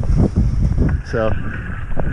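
Wind buffeting the camera microphone in low, gusty rushes, heaviest in the first second, with one short spoken word about a second in.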